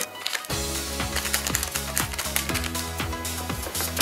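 Background music that comes in about half a second in, with a steady bass line and a regular light rhythm.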